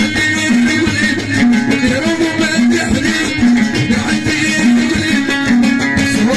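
Moroccan chaabi music led by a plucked lotar (outar, the Moroccan long-necked lute), playing a busy melodic line over a steady rhythmic backing.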